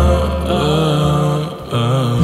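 Slowed, reverb-heavy R&B song: a drawn-out, wavering sung note without words over a deep sustained bass, dipping briefly about a second and a half in.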